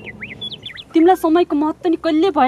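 A few quick, high bird chirps in the first second, then a person talking, which is louder.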